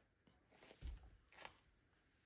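Near silence, with faint handling sounds from seasoning butter by hand: a soft low thump a little under a second in and a light click about half a second later.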